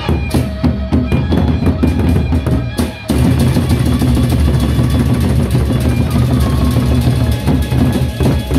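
Gendang beleq ensemble of large double-headed Sasak barrel drums beaten with sticks, with pitched metal percussion ringing above. About three seconds in, the drums break from separate strokes into fast, dense, louder beating.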